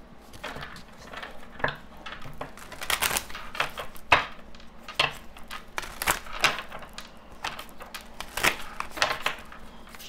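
A deck of oracle cards being shuffled by hand: an irregular run of short card snaps and slaps, several a second.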